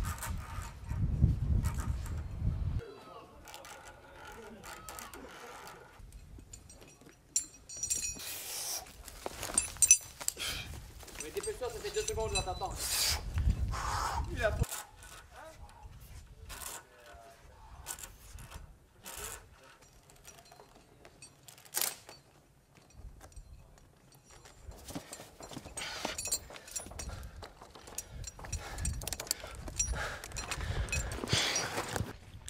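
Indistinct voices mixed with scattered clicks and knocks, with low rumbling gusts in the first few seconds and again around the middle.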